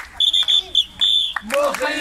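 A whistle blown in a quick rhythm of short, shrill blasts, four in just over a second. About a second and a half in, a group of children starts chanting together.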